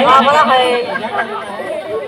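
Speech: voices talking, with chatter behind them.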